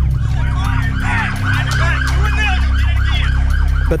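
Police sirens yelping, several overlapping, their pitch sweeping quickly up and down, over a low steady drone.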